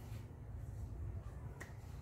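Steady low room hum during a pause, with one faint click about one and a half seconds in.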